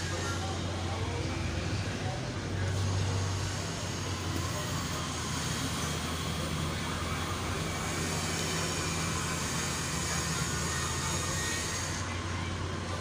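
Steady low droning hum over a background of noise, swelling slightly about three seconds in.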